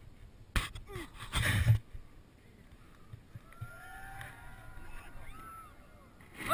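Handling noise on a helmet camera as its wearer moves on a rope web: a sharp knock, then a brief loud rush of rustling. After that, faint distant shouts that rise and fall in pitch.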